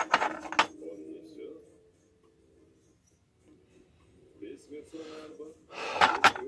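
Steel straight-razor blanks clicking against each other and on a wooden board as they are handled and laid in a row. A few sharp clicks come in the first second, and fainter handling sounds follow near the end.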